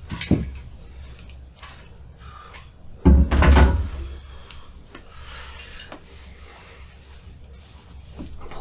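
A metal megatree mast being handled and set down on the floor: a light knock just after the start, a loud thump about three seconds in, then soft rustling and handling noise.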